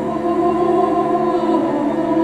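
Choral music: a choir holds a long, steady chord.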